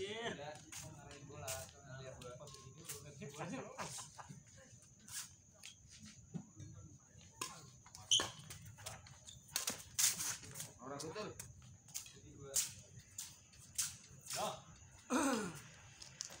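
Badminton rally: rackets strike the shuttlecock in sharp cracks every second or two, with players' short calls between shots.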